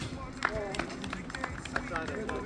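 Players calling to each other across a small-sided soccer game on artificial turf, heard faintly, with a few sharp knocks of play, the loudest about half a second in.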